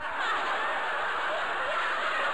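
Canned audience laughter: a laugh-track sound effect of many people laughing at once, starting abruptly and holding steady, cueing the laugh at a joke's punchline.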